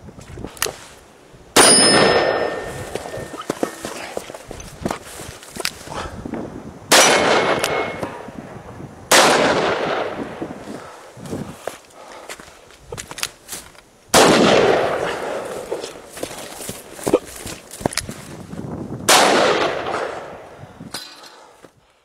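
Five .44 Magnum revolver shots spaced two to five seconds apart, each with a long rolling echo. After the first shot a struck steel target rings.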